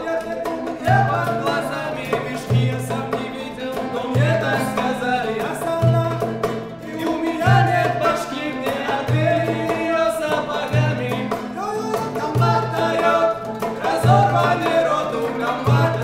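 A small live ensemble of oud, acoustic guitar and a hand drum playing a song while men sing, with a low drum beat about every second and a half.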